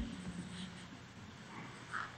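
A pause in a man's speech: faint room tone from a large hall, with a soft short sound near the end.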